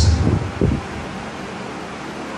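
A man's amplified voice finishes a word through a microphone, then a steady background hiss of room noise fills the rest.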